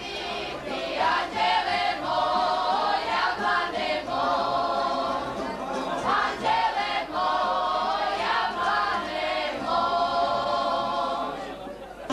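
A group of women singing a folk song together in long held phrases, the voices fading away near the end.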